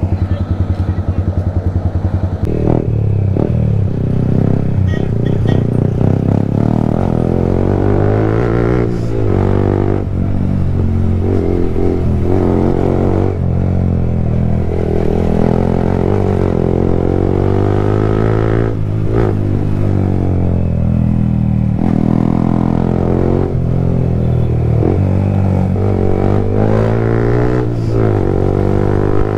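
Yamaha motorcycle engine heard from the rider's seat, accelerating and easing off through the gears. The pitch climbs and drops again and again with each throttle change and shift.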